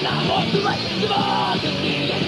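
Crust punk band recording from a demo tape: distorted guitars, bass and fast drums, with yelled vocals.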